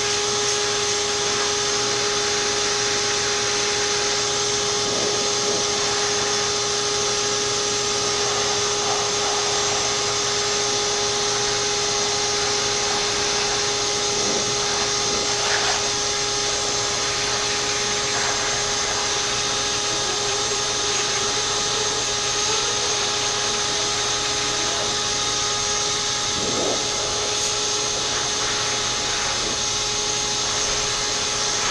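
Shop vacuum running steadily, blowing air out through its hose to clear dust from a desktop PC case: an even rush of air with a steady motor whine over it, and small shifts in pitch now and then as the hose is moved.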